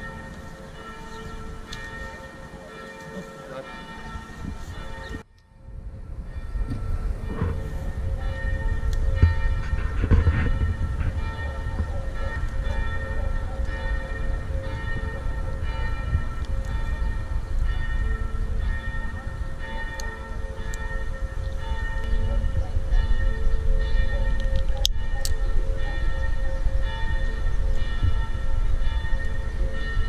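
Church bells ringing on, their held tones overlapping, over a low rumble. The sound cuts out briefly about five seconds in, and the rumble is louder after it.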